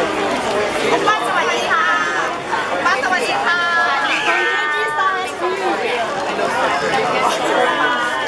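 Crowd of fans talking and calling out all at once, many voices overlapping, with some high-pitched calls in the middle.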